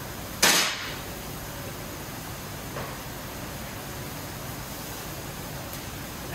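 Steady rushing hiss of a commercial kitchen's gas char grill burners and extraction, with one short, sharp burst of noise about half a second in.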